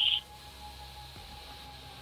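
A man's voice on a recorded telephone call stops just after the start, leaving a pause of faint steady hiss and low hum from the phone recording.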